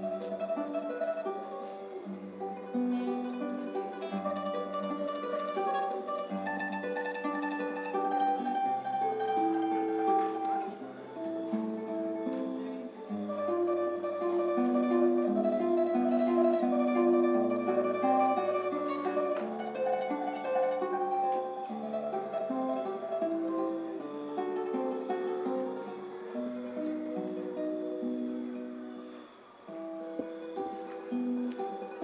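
Solo classical guitar, nylon-string, fingerpicked: a classical piece with a moving bass line under a melody, dropping briefly in level just before the end.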